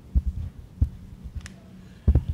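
Handheld microphone being handled: a run of five or six short, dull, low thumps over a steady low hum.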